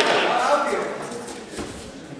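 Voices calling out in a large, echoing sports hall, fading away about a second in and leaving quiet hall noise with a few faint knocks and scuffs.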